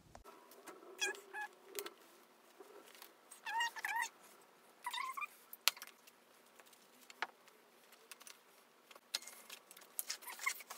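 A bicycle tyre being worked on its rim by hand: a few short rubbery squeaks, around one second in, again near four seconds and at five seconds, among light clicks and rattles of the wheel being handled.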